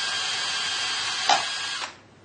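Cordless drill running steadily with a whine as it drives the lathe apron's feed gear train in reverse. About a second and a half in there is a single sharp clunk as the feed engagement lever drops out by itself, and the drill stops just before the end. The lever falls because its catch hook is not engaging effectively on its worn ledge.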